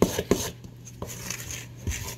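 Wooden spoon stirring thick cake batter in a stainless steel mixing bowl, knocking against the bowl several times, most of them in the first half second and a couple more later, as dry ingredients are mixed in.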